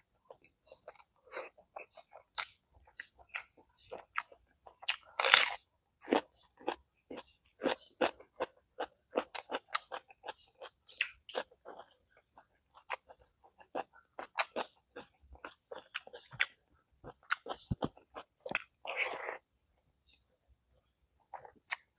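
Close-miked chewing of spiced fried eggs eaten by hand: an irregular run of short crunches and mouth clicks. A louder burst comes about five seconds in and a longer one near the end.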